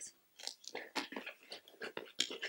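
A small cardboard mailer box being handled and pulled open: a run of soft, irregular crackles and scrapes of cardboard and paper.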